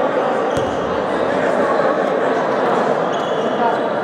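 A handball bouncing on a sports-hall floor, with a sharp thud about half a second in, over players' voices echoing through the hall.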